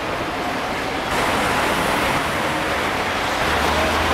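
Steady city street noise, a wash of traffic rumble and hiss, a little louder from about a second in, with a low steady hum joining near the end.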